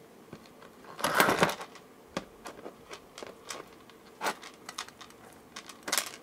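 Small hard jewellery-making bits handled by hand: a short rattling burst about a second in, then scattered light clicks and taps.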